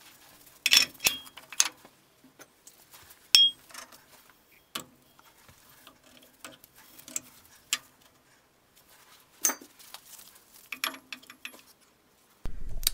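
Steel axle parts, a drive shaft tube, slip yoke and stub axle, clinking and knocking as they are handled and set in place: scattered sharp clicks at irregular intervals, one with a brief ring about three and a half seconds in.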